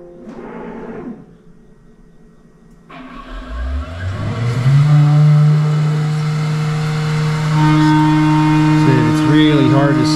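Benchman VMC 5000 CNC milling machine starting its cycle: about three seconds in the spindle spools up with a rising whine and the coolant spray comes on with a hiss, then the spindle runs at a steady pitch as it surfaces a nylon bushing blank.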